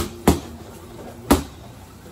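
Boxing gloves smacking against gloves in a punching drill: two quick strikes right at the start, then a third about a second later.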